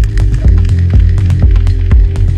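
Melodic minimal techno: a deep bassline and kick drum at about two beats a second under a held synth chord, with ticking hi-hat percussion.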